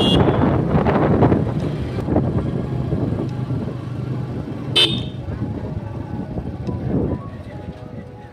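Rumble and wind noise from a moving vehicle, dying down as it slows, with a short horn toot at the start and another about five seconds in. Background music comes in near the end.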